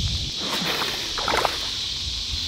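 Steady high-pitched insect chorus over the low, rustling footsteps of a person wading in shallow water.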